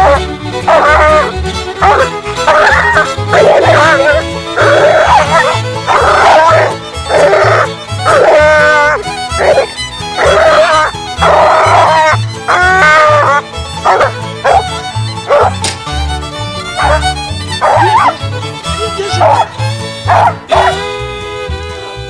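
A coon dog barking repeatedly over background music with a steady bass beat.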